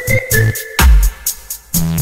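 Background electronic music with a heavy beat and synthesizer tones.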